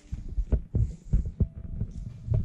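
Low, dull thumps in an irregular run, about three a second, typical of a handheld camera being moved and knocked, with a faint short hum near the end.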